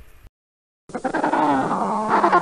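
Penguin calls that start about a second in after a brief silence: loud, pitched cries that rise and fall, with several overlapping at once.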